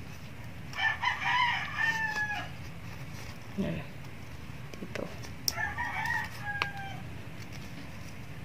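A rooster crowing twice, each crow a second or more long and dropping in pitch at the end, with a few light clicks between and during the crows.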